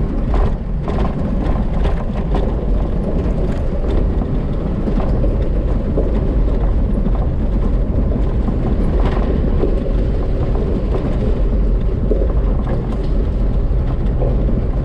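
Jeep running at a slow, steady crawl over a gravel track, heard from inside the cab: a continuous low engine and tyre rumble with scattered small clicks and knocks.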